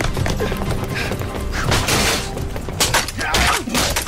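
Action-film soundtrack: music under a run of sharp punch and impact sound effects, the hits coming thickest in the last second as a helmeted soldier is struck in the face.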